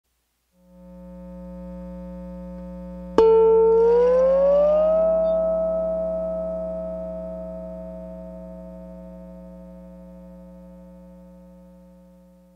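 Lap steel guitar note played through the Organelle's Deterior patch: plucked about three seconds in, slid up in pitch over a couple of seconds, then ringing and slowly fading. Under it runs a steady low electrical hum, typical of the 60-cycle hum the player notes coming through the system.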